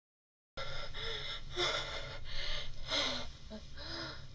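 A woman gasping in quick, heavy breaths, one roughly every half second, starting about half a second in after a brief silence, over a faint steady low hum.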